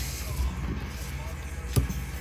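Spray booth exhaust fan running with a steady low hum, and one sharp click near the end as the lure is set into a metal alligator clip on a helping-hands stand.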